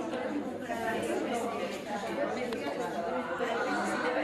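Overlapping chatter of many people talking at once in small groups in a lecture hall.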